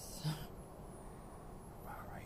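Mostly quiet background noise, with one short, low vocal sound about a quarter second in.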